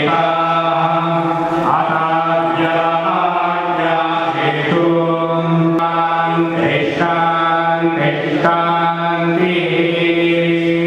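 Voices chanting Sanskrit mantras in Hindu worship, held on a near-steady pitch. Short breaks for breath come every second or so.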